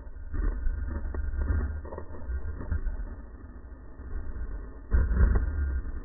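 Slowed-down, pitched-down camera audio from slow-motion footage: a deep, muffled rumble with indistinct low thumps, loudest about five seconds in.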